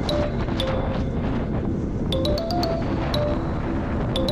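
Background music with a stepping melody and a regular ticking beat.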